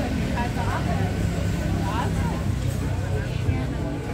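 Murmur of diners' voices over the steady low rumble of a motor vehicle's engine on the road beside the seating area.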